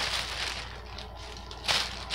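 Plastic mailer bag crinkling and rustling as it is handled, with a sharper crackle near the end, over a low steady hum.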